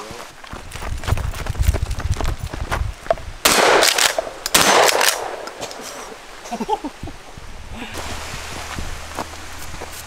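Two blasts from a Stoeger 12-gauge shotgun, about a second apart, a few seconds in, with rumbling handling and footstep noise before them.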